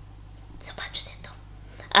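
A few short, soft hissy breath and mouth sounds from a woman about half a second in, then the start of her speech at the very end.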